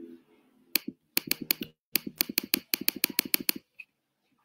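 A quick run of sharp clicks in three bursts: one click, then four, then a fast run of about eight a second lasting under two seconds.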